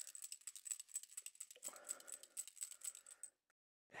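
Ball bearings rattling inside a small paint pot as it is shaken hard, to stir up paint and pigment settled in an unopened pot. A fast, even clicking rattle that stops suddenly a little after three seconds in.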